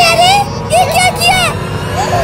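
High-pitched, sped-up cartoon character voices calling out with swooping pitch, over a steady low rumble.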